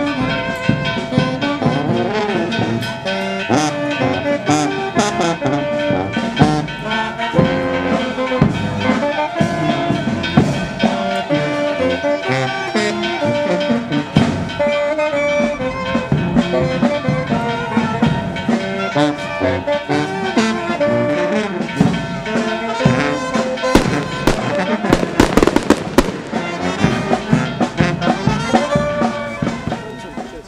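Brass band music playing a stepping melody with steady percussion. A brief loud noisy burst sounds about 25 seconds in, and the music cuts off at the very end.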